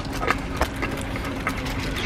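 A run of light, irregular clicks, about three a second, over a steady low hum.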